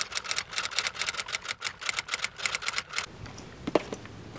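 Typewriter keys clacking in a fast, even run of about eight strikes a second, stopping about three seconds in. A single sharp click follows shortly before the end.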